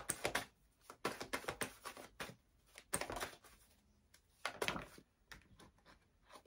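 Tarot cards being handled and dealt from the deck onto a cloth-covered table: irregular short card flicks and light slaps in small clusters, with brief pauses between.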